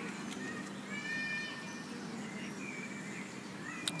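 Quiet outdoor ambience with a few faint, high-pitched animal calls; the clearest is a short call about a second in.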